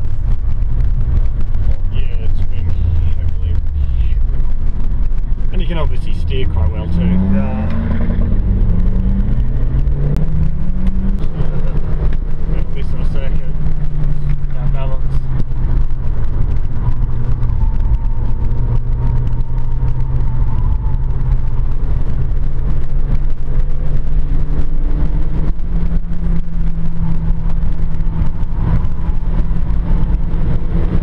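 VW Polo's engine heard from inside the cabin while being driven on a track. The pitch drops about five seconds in, climbs in steps over the next few seconds, then holds a steady drone for the rest of the lap section.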